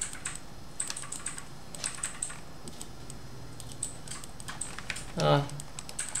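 Computer keyboard and mouse clicking in short, irregular clusters of sharp clicks.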